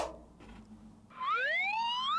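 A comic rising whistle sound effect: one smooth upward glide in pitch, starting about a second in and lasting about a second.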